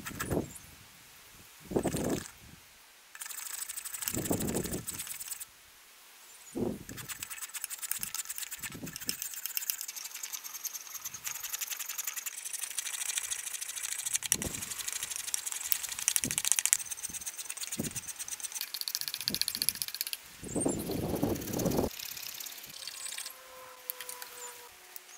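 A wooden hammer handle clamped in a vise being shaved and shaped by hand: repeated scraping, rasping strokes across the wood, with a few louder, heavier strokes among them.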